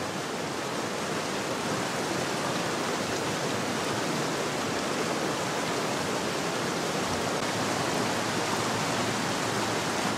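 Mountain stream rushing over rocks, a steady, even sound of flowing water.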